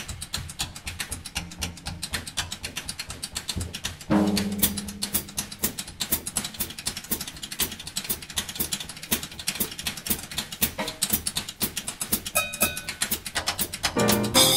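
Jazz drum solo on a Slingerland drum kit played with sticks: quick strokes several times a second across snare, toms and cymbals, with a loud accented hit about four seconds in. Trumpet and clarinet are silent.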